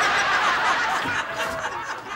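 Sitcom audience laughter from many people at once, easing off a little near the end.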